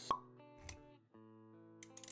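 Intro jingle music of held notes, with a sharp pop sound effect just after the start and a softer click a little later. The music briefly drops out around the middle and then resumes.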